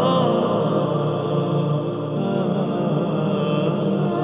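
Background music: a chant-like sung vocal melody with wavering pitch over a steady low drone.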